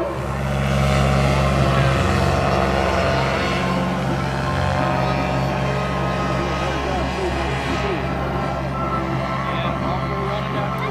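Quicksilver MX ultralight's two-stroke engine running steadily in flight, a constant low hum.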